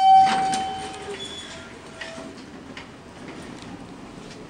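Elevator arrival chime dinging once, a clear pitched ding that rings out and fades over about a second. A fainter, lower tone follows about a second and a half in.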